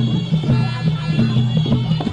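Traditional Kun Khmer ring music: a reedy wind instrument, the sralai, played over a steady drone, with drums beating.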